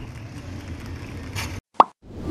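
Faint steady background noise, cut off about one and a half seconds in, followed by a short, loud rising 'plop' tone that opens the closing sting.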